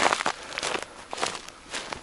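Footsteps crunching through wet snow on a footpath, several steps in a row, the loudest right at the start.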